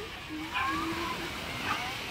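Distant voices of people on a beach, a few short calls and snatches of talk, over a steady wash of wind and small waves.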